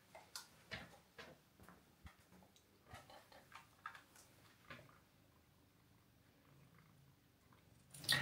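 Near silence with faint, irregular soft clicks: a cat nibbling and chewing treats from a plush pillow.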